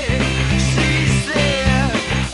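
Rock band recording with a Fender Precision Bass playing along, its low notes pushed through a Caline CP-60 Wine Cellar bass driver pedal. Above the bass, a higher melodic line bends up and down in pitch.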